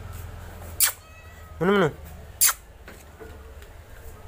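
A domestic cat meowing once, a short call that rises and falls in pitch about halfway through, with a sharp click shortly before it and another shortly after.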